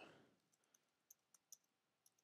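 Near silence with a few faint, isolated computer keyboard clicks as code is typed.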